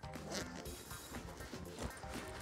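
Soft background music, with faint rustling and handling of a rolled canvas sleeping bag being pushed into its zip carry bag.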